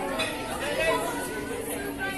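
Several people talking at once: indistinct background chatter, with no other clear sound standing out.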